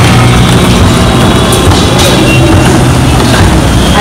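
Motor traffic on the overbridge: vehicle engines running close by, a loud steady low hum under road noise, the hum easing a little after about three seconds.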